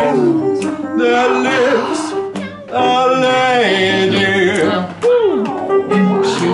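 Voices singing long held notes without clear words over an upright piano. About five seconds in, a voice swoops down in pitch.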